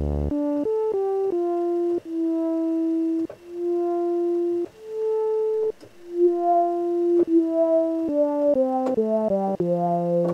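Analog modular synthesizer sawtooth voice played through a Synthesizers.com Q150 transistor ladder filter, its cutoff swept by an envelope generator. It plays a run of notes, quick at the start and end, with a few longer held notes in the middle that swell in.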